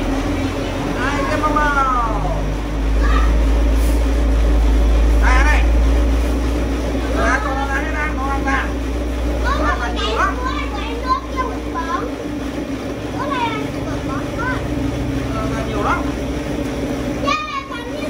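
Electric cotton candy machine running, its motor-driven spinner head giving a steady hum over a low rumble while floss is spun and wound onto a stick.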